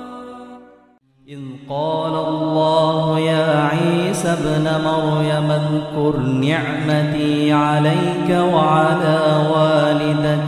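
A man reciting the Quran in Arabic in a slow, melodic, drawn-out style, with long held notes that glide up and down in pitch. The recitation begins after a brief pause about a second in.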